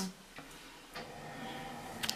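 Quiet room tone with two faint clicks, about a third of a second and a second in.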